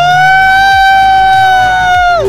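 A person's loud, high-pitched whoop, held on one steady note and dropping away at the end.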